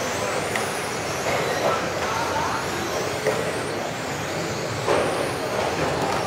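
Several electric RC racing cars running laps together, their motors whining in high tones that rise and fall as they speed up and slow down, echoing in the hall. A couple of sharp knocks sound, about half a second in and about five seconds in.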